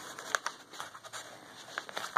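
Faint handling of paper cards and journal pages: stiff card stock shuffled and slid against paper, with one sharp tap about a third of a second in and a few light ticks near the end.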